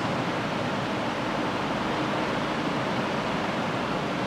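Steady, even noise with no distinct clicks, knocks or rhythm.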